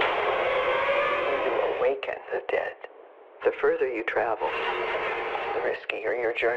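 Dialogue from a horror film trailer: a voice speaking with the thin, narrowed sound of a radio or small speaker, with a short pause about three seconds in.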